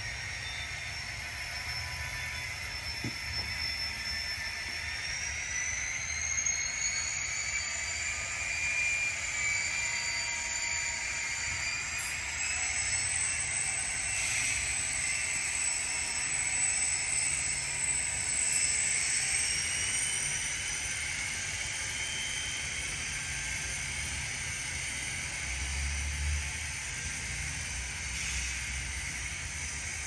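LokSound sound decoder in an N scale SD40T-2 model locomotive playing turbocharged diesel engine sound through its tiny speaker, a steady whine over a low rumble. The whine rises in pitch twice, about five seconds in and again near the twenty-second mark, as the throttle is notched up.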